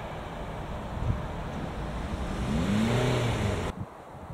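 Road traffic at a level crossing: tyre and engine noise from cars driving over it. Near the end one car's engine note rises and then falls as it passes, the loudest sound here, and then the sound cuts off suddenly.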